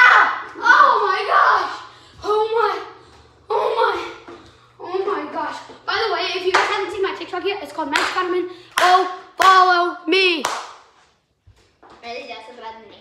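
Children's voices shouting and laughing in a garage, with a few sharp slaps or knocks among them and a long wordless yell that slides in pitch near the end. A faint steady hum sits underneath and stops about nine seconds in.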